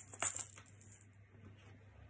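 A hand rattle shaken and trailing off, with one sharp shake just after the start; the rattling dies away within the first second, leaving a faint low hum.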